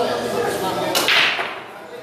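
Pool break shot: about a second in, the cue drives the cue ball into the racked balls with a sharp crack, and the balls scatter with a brief burst of clacking that dies away within half a second.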